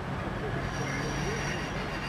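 Train wheels squealing as the train moves off: a thin, high squeal sets in about half a second in, over a steady low drone and a hiss of steam from the steam locomotive.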